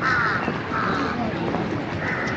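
A crow cawing: two harsh caws close together, over outdoor background noise.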